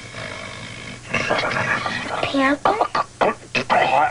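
A man imitating an animal's call with his voice: a run of short, rough vocal bursts that start about a second in.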